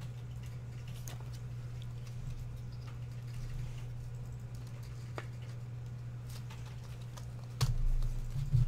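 Light clicks and rustles of trading cards in plastic sleeves being handled and stacked, over a steady low hum. A louder low thump comes near the end.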